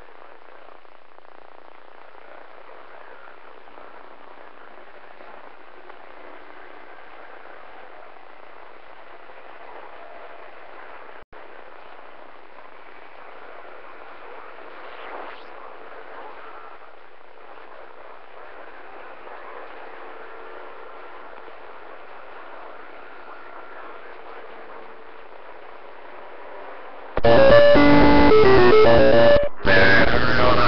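Two-way radio receiver playing steady band static through its speaker, with only faint traces of weak signals under the hiss and a brief dropout about 11 seconds in: the band is open but no clear station comes through, which the operator takes for no propagation conditions. About three seconds before the end a strong, much louder signal breaks in.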